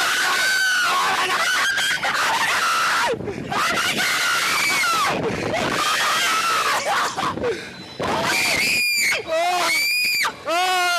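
A man and a woman screaming on a spinning thrill ride: long, drawn-out screams with short breaks between them.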